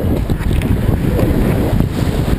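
Whitewater rushing and splashing around a wildwater racing kayak, heard close up through a boat-mounted camera, with wind buffeting the microphone.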